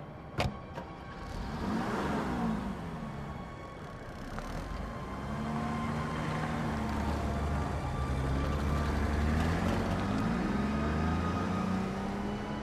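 A car engine running: a short swell with gliding pitch about two seconds in, then a steady run from the middle onward, its pitch rising gently near the end. A single sharp knock sounds just after the start.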